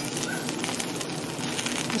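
Melted cheese and pepperoni on a tortilla pizza sizzling and bubbling in a hot stainless steel frying pan: a steady, faint crackling hiss.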